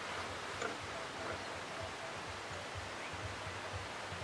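Outdoor ambience: a steady hiss over an uneven low rumble, with faint short notes recurring now and then and a faint tick about half a second in.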